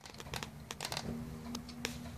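Scattered small clicks and taps of fingers handling the opened radio transmitter's plastic parts and plug-in RF module as it is worked loose, over a low rumble, with a faint steady hum coming in about a second in.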